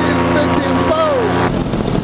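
Paramotor engine running steadily at cruise in flight, with a singing voice over it. About three-quarters of the way through, the steady drone breaks off abruptly.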